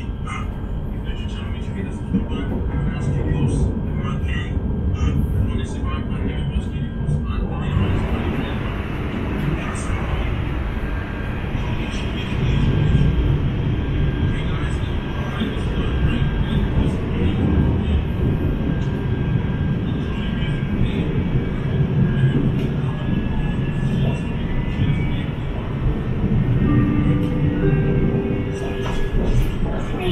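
Inside a KTM Class 92 electric multiple unit running along the line: a continuous rumble of wheels on rails that grows louder about twelve seconds in. A few brief whining tones come near the end.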